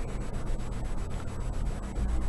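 Steady background hiss with a low hum: the noise floor of the room and microphone.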